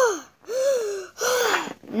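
A high-pitched human voice making a string of short wordless vocal sounds, each rising then falling in pitch, about half a second apiece with short gaps between.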